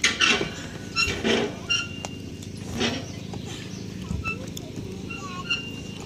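Outdoor playground ambience: scattered children's voices and calls at a distance, with a few short high chirps, over a steady low hum.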